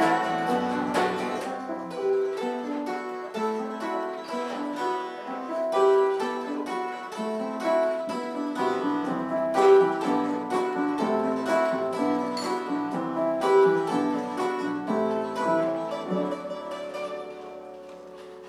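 A live band plays an instrumental passage led by quick picked guitar notes, with no singing. The music thins out and dies away near the end as the song finishes.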